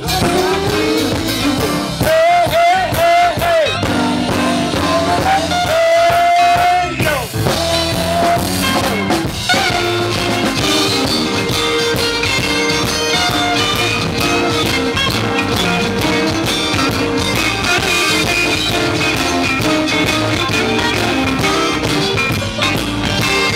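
A live blues band playing an instrumental passage: an electric guitar lead over a drum kit, bass and keyboard. The guitar's notes bend and waver in the first seven seconds or so, then the band settles into steadier held notes.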